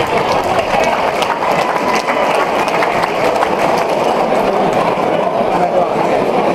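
Loud, steady crowd noise from a large audience: many voices talking and shouting at once.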